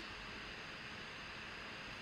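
Faint steady hiss of background room tone with no speech.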